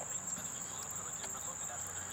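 Insects chirring in a steady, high-pitched drone.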